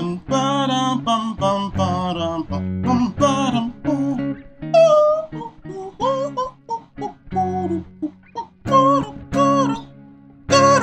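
An electric guitar played in short phrases, with a man vocalising a melody over it in bits.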